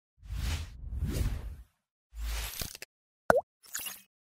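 Logo-intro sound effects: two long swooshes over a low rumble, a shorter third swoosh, then a brief pitched blip that bends down and back up just after three seconds, ending in a faint high sparkle.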